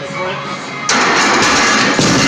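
A loaded barbell crashing down from a failed heavy squat: a sudden loud, harsh clatter of the bar and iron plates about a second in, holding at full loudness for over a second.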